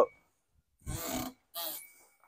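Two short grunts from a man, about a second in and again near the end, with silence between: effort sounds as he steps down off the deck.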